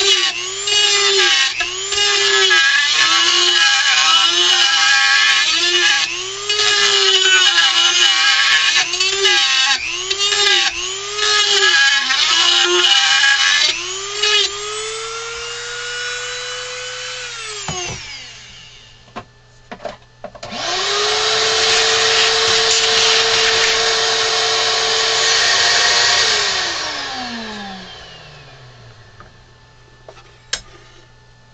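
Dremel rotary tool with a small carving bit cutting into wood. Its high motor whine dips in pitch over and over, about once a second, as the bit bites with each pass. It then runs free and cuts off suddenly a little over halfway through. The whine starts up again, runs steady, and winds down with a falling pitch near the end as it is switched off.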